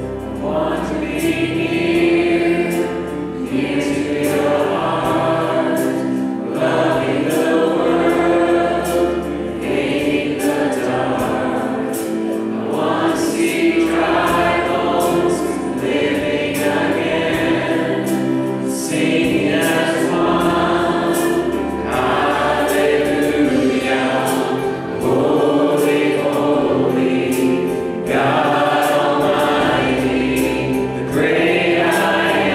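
A contemporary worship song sung by a group of men and women. The accompaniment includes an acoustic guitar and a keyboard, and the singing comes in phrases a few seconds long.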